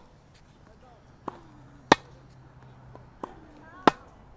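Tennis ball being struck with racquets and bouncing on a hard court during a rally: a softer knock followed by a loud sharp strike, twice, about two seconds apart.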